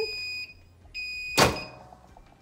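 Digital heat press timer beeping twice, two steady high-pitched beeps of about half a second each, marking the end of the 30-second press. A sharp clunk about a second and a half in as the clamshell press is opened.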